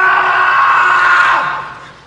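A loud, long scream held on one high pitch, fading out near the end.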